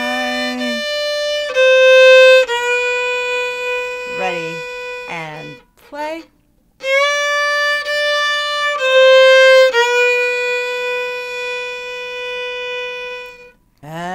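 Fiddle bowing two short country fill phrases, mostly long held notes, with a brief pause about six seconds in.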